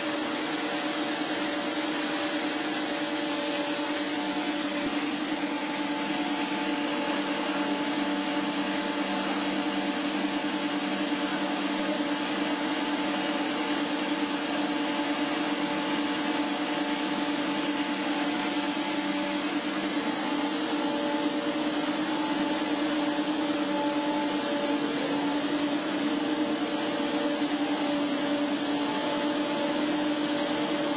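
PP-R pipe extrusion line running in production: a steady machine hum with a strong low tone and several fainter higher tones over an even hiss, unchanging throughout.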